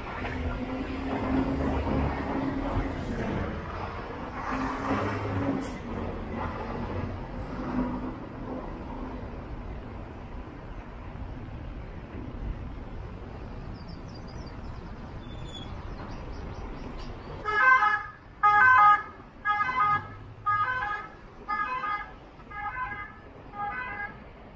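Road traffic passing close by, with an engine hum loudest in the first few seconds. From about two-thirds in comes the loudest sound: a run of about seven pitched notes, roughly one a second, each fainter than the last.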